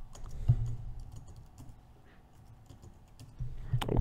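Typing on a computer keyboard: a run of quick keystroke clicks, thinning out after the first couple of seconds, with one louder low thump about half a second in.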